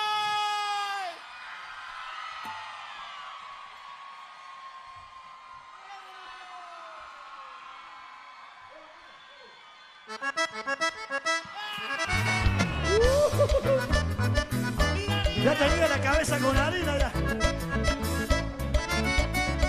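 A held note ends about a second in, followed by a quieter stretch. About ten seconds in, a live cuarteto band starts a song: choppy accordion chords with percussion, then a heavy bass and drum beat joins about two seconds later.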